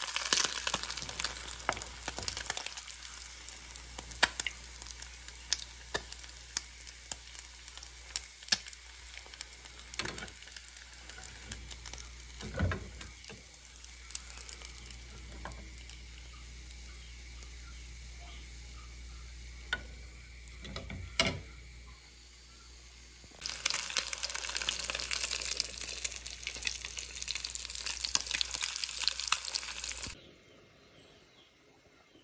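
Small whole fish deep-frying in hot oil in an aluminium pan, the oil sizzling and crackling steadily, with a couple of knocks from a metal skimmer against the pan. The sizzling eases after the first couple of seconds and comes back louder for the last several seconds.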